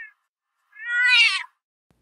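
A cat meowing: the tail of one meow right at the start, then a second meow about a second in, each rising and then falling in pitch.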